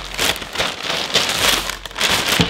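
Thin clear plastic poly bag crinkling as it is handled, a dense, continuous crackle.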